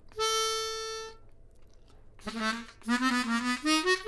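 Chromatic harmonica playing one long, steady held note, then after a short pause a few shorter, lower notes that climb in pitch near the end. These are single notes played slowly, one at a time, to demonstrate a phrase hole by hole.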